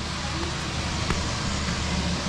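Steady low rumble under an even hiss of outdoor background noise, with one light click about a second in.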